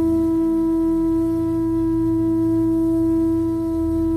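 Bansuri flute holding one long, steady note over a low, steady drone.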